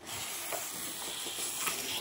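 A paper-wrapped rolled canvas sliding out of a long cardboard box, paper rubbing against cardboard in a steady rustle.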